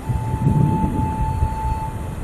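Wind buffeting the camera microphone: an irregular low rumble that swells and dips, with a thin steady high tone running through it.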